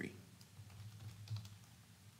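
Faint typing on a computer keyboard: a few soft keystrokes.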